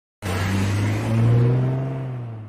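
A low, steady hum with hiss over it, starting abruptly from silence and then slowly fading away.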